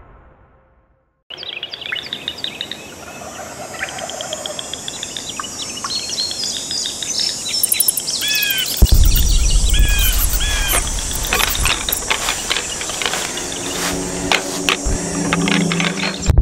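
After about a second of silence, birds chirping and calling in quick repeated notes over a rising outdoor ambience. From about nine seconds a deep low rumble joins in under the calls.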